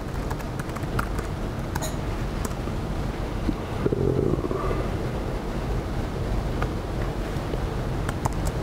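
Steady room hum and hiss, with a few faint clicks of MacBook keys being typed in the first couple of seconds.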